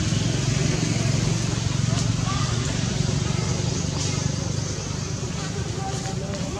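A steady low hum under outdoor background noise, with faint, indistinct voices in the distance.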